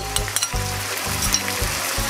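Cabbage and dried shrimp sizzling in an oiled wok as they are stir-fried with a wooden spatula, with a few light clicks in the first half-second.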